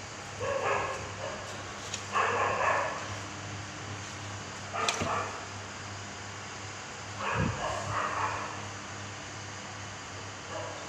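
A dog barking in three short bouts, each about a second long: near the start, about two seconds in, and about seven seconds in. A single sharp click about five seconds in.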